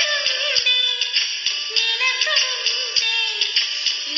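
Karaoke recording of a Telugu film song: a voice singing the melody over a backing track with a steady beat.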